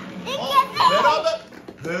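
Voices talking through most of it, with a brief quieter stretch before the talk resumes.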